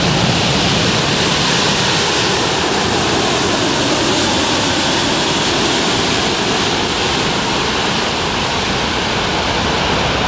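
Steady, loud rushing noise of the Antonov An-225 Mriya's six turbofan jet engines as the giant aircraft moves along the runway.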